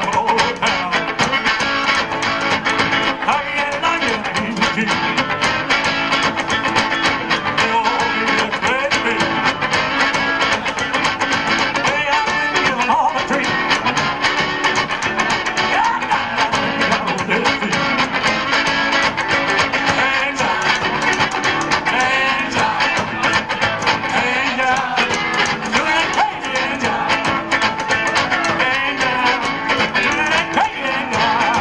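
Rockabilly band playing live: electric guitar over upright bass and drums, running steadily without a break.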